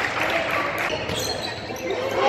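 Basketball being dribbled on a hardwood gym floor, bouncing repeatedly, with voices in the gym behind it.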